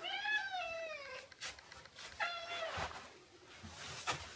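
Domestic cat meowing twice, greeting its returning owner: a long call that rises and falls, then a shorter one about two seconds in.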